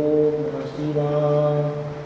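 A man's voice chanting a long mantra syllable, held at one steady low pitch; the vowel colour shifts about halfway through, then the note fades near the end.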